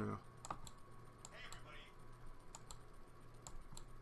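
A few scattered, faint clicks of computer keyboard keys being tapped, over a faint steady electrical hum.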